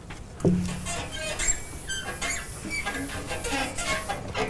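Scattered faint squeaks and light rubbing from a blackboard being worked by hand or eraser.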